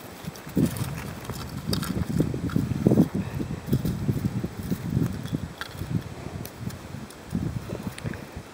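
Irregular soft thumps, scuffs and rustling from a small fish being handled and unhooked on packed snow, with a few sharp clicks.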